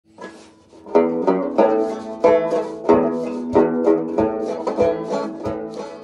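Banjo playing an instrumental introduction: plucked chords and notes starting about a second in, with a strong accented stroke roughly every two-thirds of a second.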